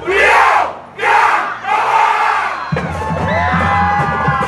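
A large group of voices shouting together in three loud bursts during a break in the band's music, then the band's low brass and drums come back in at about two and a half seconds in.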